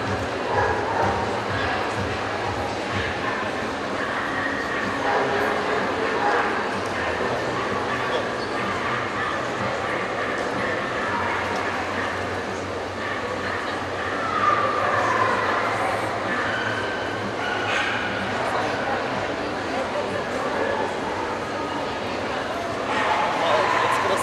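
Dogs barking and yipping over a steady babble of crowd voices.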